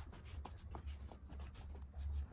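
Faint movement and handling noise from the person filming: small scattered clicks and rustles over a low steady rumble.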